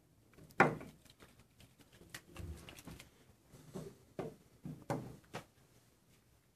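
A few sharp knocks and clicks of test tubes being set down into a wooden test-tube rack, the loudest just over half a second in and several lighter taps near the end.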